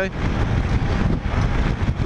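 Steady low wind rush over the microphone of a Kymco AK550 maxi-scooter riding at highway speed, mixed with the scooter's running and road noise.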